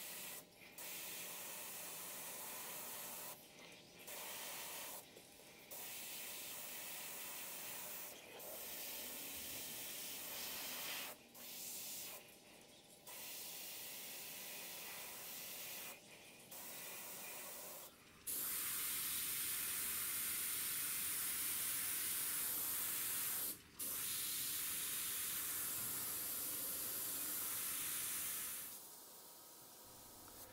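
Gravity-feed airbrush spraying paint: a steady hiss of air that stops and starts in short bursts as the trigger is pressed and released. About two-thirds through it turns louder and runs longer, with one brief break.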